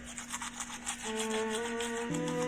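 Toothbrush scrubbing teeth in quick, regular back-and-forth strokes. Soft background music with held notes comes in about a second in.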